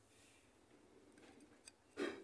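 Near silence: faint handling of parts, with one light click near the end as the greased plastic bushing is worked onto the metal suspension arm.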